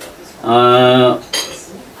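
A man's voice holding one steady, level-pitched syllable for under a second, followed about a second in by a short sharp clink.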